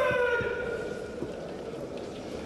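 A long, held kiai shout from a kendo fencer in the hall, starting at the opening and sliding slowly down in pitch for about a second, with a couple of low thuds in the background.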